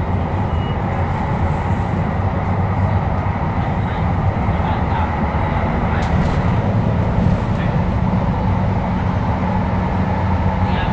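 Tyne and Wear Metrocar running along the line, heard from inside the car: a steady rumble of wheels on rail and running gear, with a few brief clicks about six seconds in.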